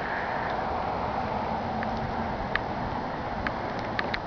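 Steady outdoor background noise, with a few faint ticks scattered through it.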